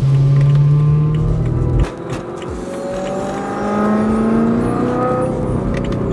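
Car engine heard from inside the cabin as the car accelerates: a steady drone that drops away about two seconds in, then a tone climbing slowly in pitch over the next few seconds.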